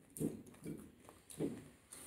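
Close-miked chewing with the mouth closed: three soft chews about half a second apart.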